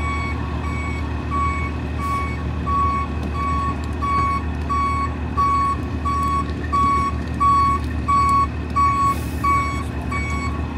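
Tow truck's backup alarm beeping about twice a second as the wrecker reverses, over its diesel engine running low underneath. The beeps grow louder in the second half as the truck backs closer.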